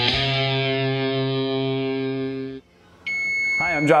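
Intro music: a distorted electric guitar chord held and ringing out, cutting off suddenly about two and a half seconds in. A high steady tone follows, and a man starts speaking near the end.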